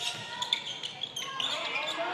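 Basketball being dribbled on a hardwood court during live play, with the faint ambience of a large hall.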